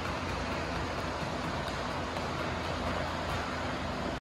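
Steady rushing background noise in a gym, with a few faint taps from sneakers on rubber flooring.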